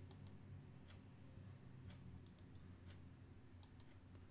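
Faint computer mouse clicks, about ten, scattered irregularly and some in quick pairs, over a faint steady low hum.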